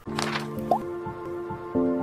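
Channel logo jingle: held musical chords that open with a brief swoosh, with a short rising blip under a second in and a louder new chord near the end.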